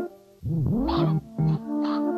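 Modular synthesizer music patched in VCV Rack. After a brief gap, a pitched tone swoops down and back up about half a second in, then sustained chord tones hold, part of a phrase that loops about every three seconds.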